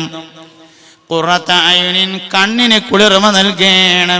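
A man chanting in long, steadily held notes. The voice breaks off just after the start and resumes about a second in.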